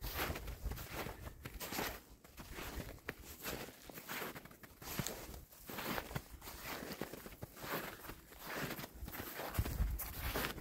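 A hiker's footsteps through snow at a steady walking pace, about two steps a second.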